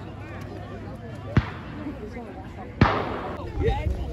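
Two black-powder blank shots from the reenactment battle, about a second and a half apart, each a sharp crack with a short echo, the second louder. Spectators' chatter runs underneath.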